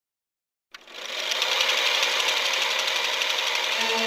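A film projector running with a fast, steady mechanical clatter. It fades in under a second after a silent start. Near the end the first low notes of the song come in under it.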